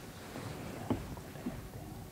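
Faint room noise in an auditorium: a soft rustling swell with two light knocks, about a second and a second and a half in.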